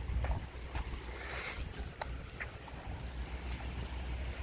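Wind rumbling on the microphone, with a few faint ticks and rustles.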